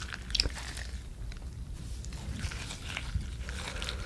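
Wet, sauce-soaked kimchi cabbage being squeezed and torn by a gloved hand in a glass bowl: moist squelching with many small scattered clicks over a low hum.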